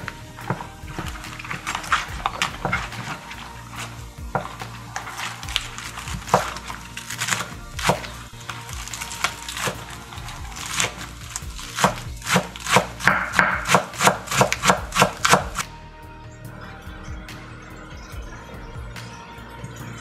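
A knife chopping green onions finely on a wooden chopping board: a run of sharp strokes that quickens to about three a second and then stops about three-quarters of the way through. Background music plays throughout.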